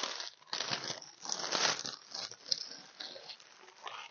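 Clear plastic bag crinkling and rustling in irregular bursts as it is pulled open and handled, quieter in the last second.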